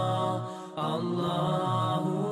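Chanted vocal music: sustained, melodic singing voice held on long notes with slow pitch changes, breaking off briefly just before the middle and then resuming.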